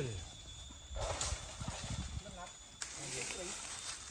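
Faint voices calling out among a few low thuds, with no engine running.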